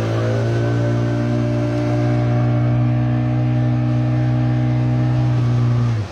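A loud, steady low drone held at one pitch, cutting off abruptly at the end.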